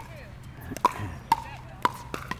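Four sharp, hollow pocks of a plastic pickleball being struck, each ringing briefly, with faint voices underneath.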